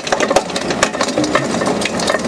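ALLU screening bucket on an excavator sieving soil: a dense, irregular clatter of clicks and knocks as its rotating screening drums churn the earth and stones, over the steady running of the excavator's engine.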